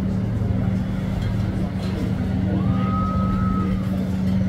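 A steady low engine hum, unchanging, with a brief high whistle-like tone about three seconds in.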